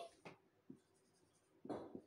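Marker pen writing on a whiteboard: a few short, faint strokes, the longest near the end.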